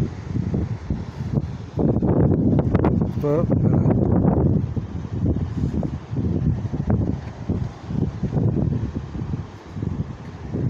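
Wind buffeting a phone microphone in gusts throughout, with a person's voice heard from about two seconds in to about four and a half.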